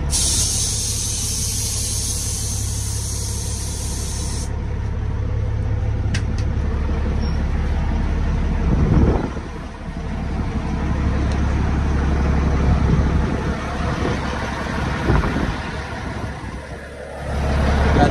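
Heavy semi truck's low, steady rumble, with a loud hiss of escaping air for the first four or so seconds that cuts off suddenly.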